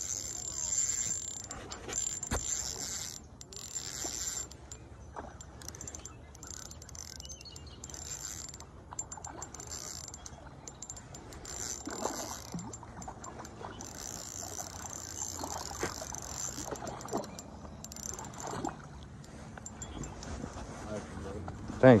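Shimano Sienna 500 spinning reel cranked in bouts while playing a hooked trout on light line, its gears giving a high whirring that starts and stops every second or few.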